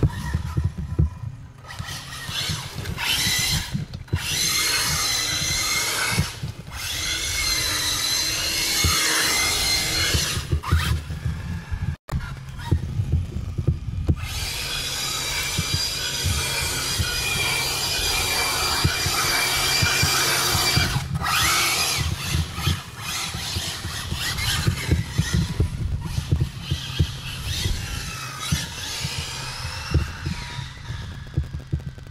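ARRMA Infraction RC car's electric motor whining, its pitch rising and falling in repeated runs of a few seconds as the car speeds up and slows down, with tyre noise on asphalt, over a steady low rumble.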